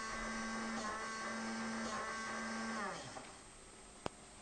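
Small electric motor of a USB hamster-wheel toy whirring steadily while a keyboard key is held down, then winding down with a falling pitch near the end.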